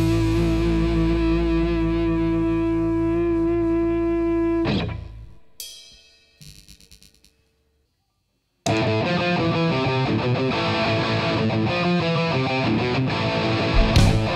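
A rock band's held final chord on distorted electric guitars and bass, ringing steadily for about four and a half seconds and then dying away. After a few faint clicks and a moment of silence, the full band of electric guitars, bass and drums starts the next song abruptly and plays on.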